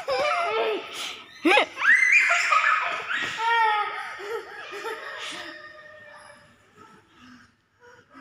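High-pitched laughter and excited squealing, loud through the first few seconds and dying away after about six seconds.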